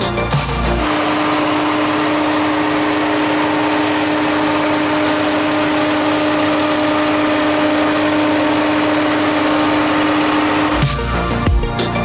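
Nissan Versa's four-cylinder engine idling steadily under the open hood, an even hum with a steady whine over it, from about a second in until near the end. Background music plays briefly at the start and the end.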